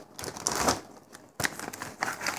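Rustling and light clicks of a cardboard toy kit box and its packaging being handled, with a short knock about a second and a half in.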